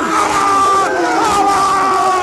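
A group of footballers shouting and cheering together at close range in a goal-celebration huddle, several voices overlapping in long held yells.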